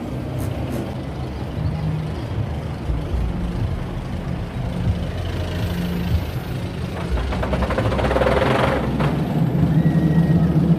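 Steel roller coaster train running along its track overhead: a steady low rumble that swells louder and rattles from about seven to nine seconds in as the train passes close.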